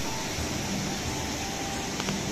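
Steady rushing of a mountain river flowing over rocks.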